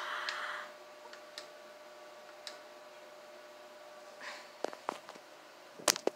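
Quiet room with a faint steady hum, a few soft ticks, then a cluster of sharp clicks and handling noise near the end, the loudest a sharp click just before the end.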